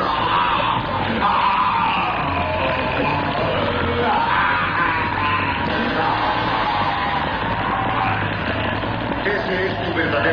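A man yelling at length over dramatic background music, his voice wavering in pitch.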